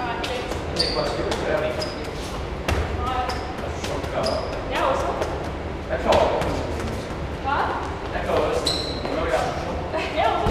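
A football being juggled and kicked, with a run of short thuds of the ball on foot and concrete floor, echoing in a bare concrete-walled room.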